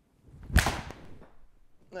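Golf iron (Mizuno MP-20 HMB 7-iron) swung through and striking a ball off a hitting mat: a short swish leading into one sharp strike about half a second in, then a fading trail. It is a solidly struck shot.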